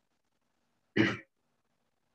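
One short throat-clear from a person, about a second in, heard over an online video call.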